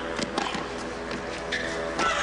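Tennis ball being struck by racquets during a rally: a few short sharp hits over a steady background of court and crowd noise.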